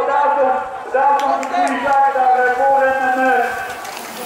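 Spectators shouting encouragement in long drawn-out calls. A few sharp clicks come between one and two seconds in.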